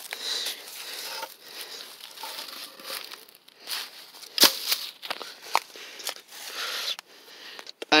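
Dry leaves and wood rustling and crackling as sticks are handled and pulled from a log pile, with a few sharp knocks of wood, the loudest about four and a half seconds in.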